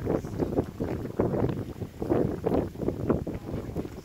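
Wind buffeting the microphone in irregular gusts, a low rumble that swells and drops.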